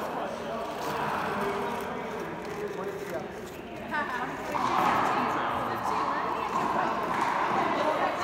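Indistinct chatter of people talking, with no clear words.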